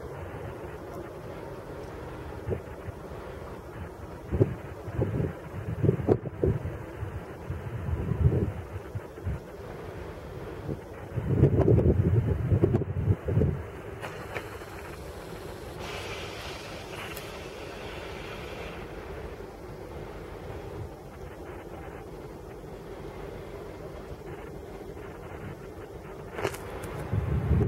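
Wind buffeting the microphone in gusts, strongest from about four to fourteen seconds in, over a steady low hum from a distant shunting rail vehicle.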